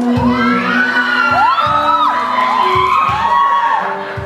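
Audience screaming and cheering in high, rising-and-falling shrieks over a live band's music, with a low thumping beat underneath.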